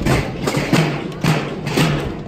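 Many drums beaten together in a steady marching rhythm, about four strokes a second, in a Spanish tamborada drum procession, with a marching band playing along.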